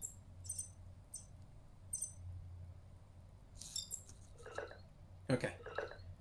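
EMO desktop robot's short, high-pitched electronic chirps and squeaks. A few come singly, then a quick run of them about two-thirds in, as it answers a voice command to show its battery level.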